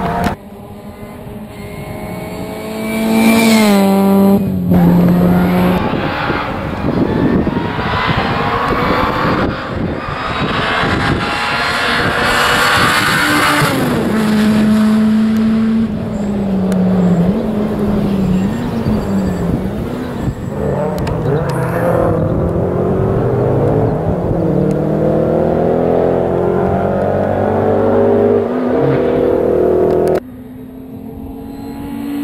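A rally car's engine revving hard as the car comes through the stage: it climbs in pitch and drops at a gearchange about four seconds in, and is loudest as the car passes at mid-clip. It then falls in steps as the driver lifts off and changes down, and climbs steadily again as the car accelerates away near the end.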